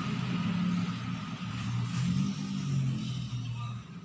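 A motor vehicle's engine running: a low, steady hum whose pitch wavers slightly.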